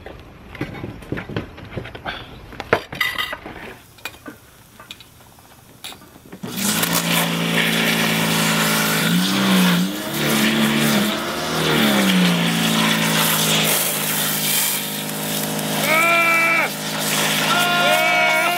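Plates and cutlery knocking and clinking, then about six seconds in an electric pressure washer starts up and runs loud and steady, its spray blasting a turkey. The motor's hum dips in pitch a few times as it works.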